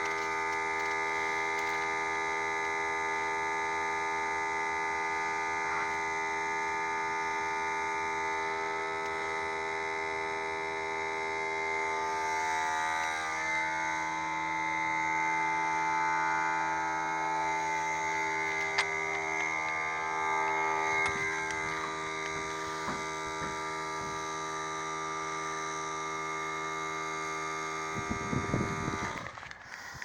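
A loud, steady machine hum with many overtones, unchanging in pitch, that cuts off near the end, with a few brief knocks just before it stops.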